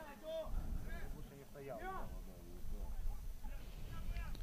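Faint, distant voices of players and coaches calling out on a football pitch over a low outdoor rumble.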